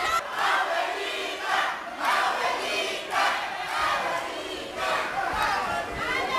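A crowd of spectators chanting, many voices shouting together in a rhythm of about one shout a second.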